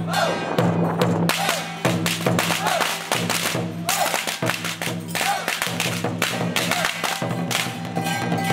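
Taiwanese temple-procession percussion of gong, cymbals and drum playing a steady beat: a crash every half-second or so over sustained gong ringing.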